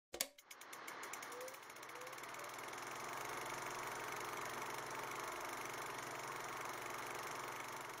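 Movie film projector sound effect: a sharp click, then the rapid, steady clatter of the projector mechanism running.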